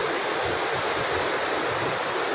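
Fast mountain river rushing over boulders and rapids, a steady roar of white water.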